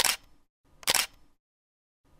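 Camera shutter clicking twice, once at the start and again about a second later, with silence between.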